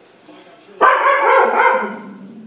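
Belgian shepherd barking: a quick run of loud barks that starts suddenly about a second in and lasts about a second.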